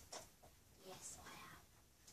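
Soft, barely audible whispered speech from a woman muttering to herself, with a hissing consonant about a second in.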